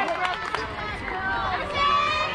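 Several high-pitched young voices shouting and cheering over one another at a youth softball game.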